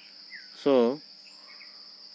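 Insects calling steadily in the background, a constant high-pitched band of sound, with a man saying one short word about half a second in.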